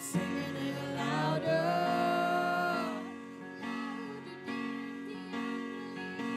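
Live worship band music: electric guitar and bass guitar playing under singing, with one long held note about a second in before the music eases off.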